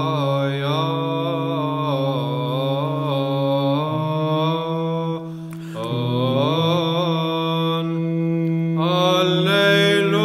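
Orthodox church chant: a sung melody moving over a steady, held low drone note, with a short break in the melody about five and a half seconds in.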